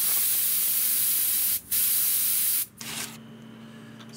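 Central Pneumatic airbrush spraying with a loud, steady hiss in two bursts. The first is about two seconds long; after a brief break comes a second of about a second that cuts off suddenly. The spraying is part of cleaning out the airbrush after spraying graphite conductive fluid.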